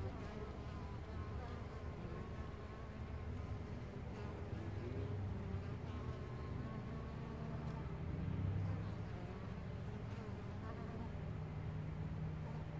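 Carniolan honey bees buzzing in flight at the hive entrance, a steady hum that swells briefly about eight seconds in.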